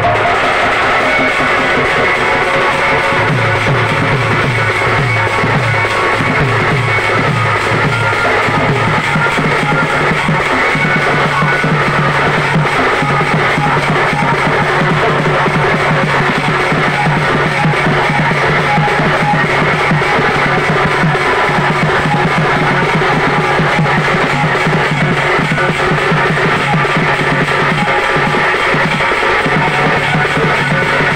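Live Odia folk music for danda nacha: a large double-headed barrel drum (dhol) is beaten with a stick and the hand, under sustained, held tones that run without a break.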